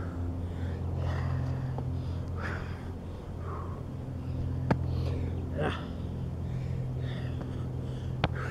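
A man breathing hard and gasping during a burpee, a breath every second or so, with one sharp smack on the concrete about halfway through as he goes down into the plank and back up. A steady low hum runs underneath.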